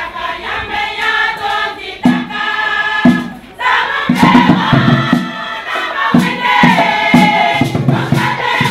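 Women's choir singing a lively song in chorus. After a brief dip about three and a half seconds in, the singing comes back louder over a steady low beat.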